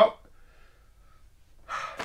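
A man's spoken "well" at the very start, then a pause of quiet room tone, then a short breath drawn in near the end.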